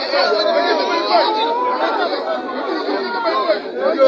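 Several people talking and calling out at once, their voices overlapping into a jumble with no single clear speaker; the recording sounds thin, with no low end.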